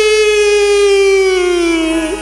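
A singer holding one long note of a Chhattisgarhi jas devotional song; the pitch sags slowly downward near the end.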